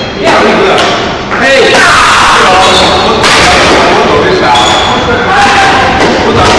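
Din of a busy badminton hall: many indistinct voices, with sharp thuds of rackets hitting shuttlecocks, echoing in the large hall.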